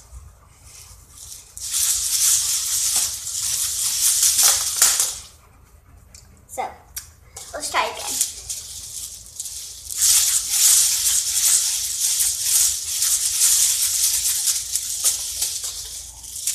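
Hula hoop spinning around a person's waist, a shaking, hissy rattle in two long stretches: from about two to five seconds in, then from about ten seconds in until shortly before the end.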